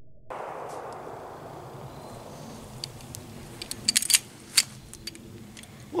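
Sharp metallic clicks from a 1911 pistol being handled, scattered through the clip with a quick cluster of them about four seconds in and two more soon after.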